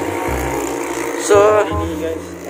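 Background music with held notes over a low part that pulses on and off.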